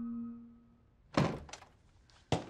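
A held tone fades out in the first half second. About a second in, a wooden bedroom door is pushed open with a sharp thunk, followed by a lighter knock.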